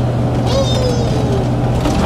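MAN KAT1 4x4 truck's diesel engine running steadily while driving, heard from inside the cab with road noise.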